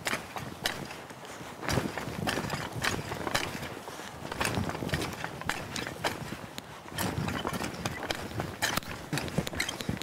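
A steel spading fork twisting in and out of loose, compost-dressed garden soil: irregular crunching, scraping and knocking of the tines through the clods, working the compost into the top few inches of the bed.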